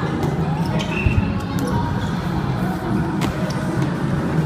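Echoing gym-hall din of a bubble-football game: a few sharp knocks and one heavy thump about a second in, from players in inflatable bubble balls on a wooden sports floor, over a steady background hum.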